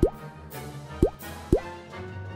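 Three quick rising-pitch 'bloop' pop sound effects, one at the start, one about a second in and one about half a second later, over steady background music.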